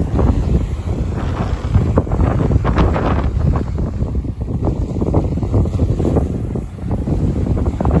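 Strong, gusting wind buffeting the microphone, with surf washing over the rocky shore beneath.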